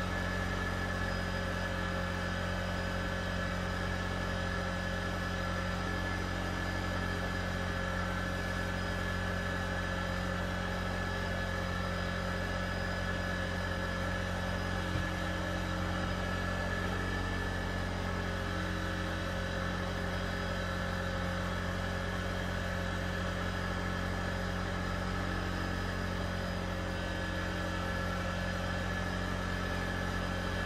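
An engine running steadily at idle, a constant low hum that does not change in pitch or level.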